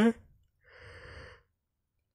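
The tail of a spoken word, then a soft, breathy sigh from the lecturer lasting under a second, about a second in, between sentences.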